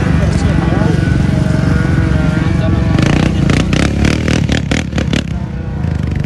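Low, heavy rumble of SUV engines running in the dunes, with people's voices over it. About halfway through comes a quick run of sharp cracks, about five a second, lasting some two seconds.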